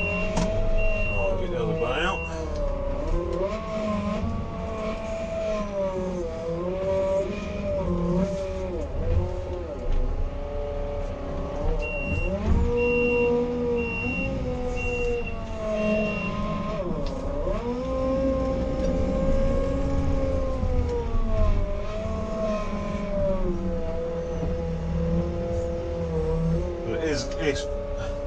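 Merlo 42.7 telehandler's diesel engine, heard from inside the cab, rising and falling in pitch as the machine is driven and worked. A high beeper sounds about once a second at the start and again in the middle.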